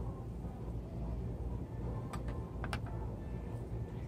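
A metal spoon clicking a few times against a glass measuring cup while mixing flour and water, the clicks falling about two seconds in and just after, over a steady low background rumble.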